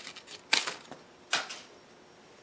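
Dry curled wood shavings from a hand plane crinkling as they are handled, in two short crackles about half a second and a second and a half in.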